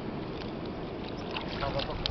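Water sloshing and splashing around a mesh fish keepnet being handled in shallow water, with a few short splashes, under a steady outdoor noise. Faint voices are heard twice.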